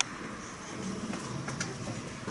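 Ice hockey rink sounds: a sharp knock right at the start and a few fainter clicks over a second in, from sticks and puck, over the low murmur of the arena.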